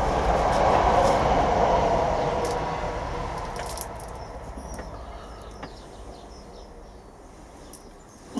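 A passing vehicle's rushing rumble, loudest about a second in and then fading away steadily over the next several seconds.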